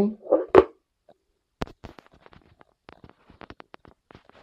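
Light, irregular clicks and taps from a handheld iPod Touch being handled and laid down on a wooden table, starting about a second and a half in.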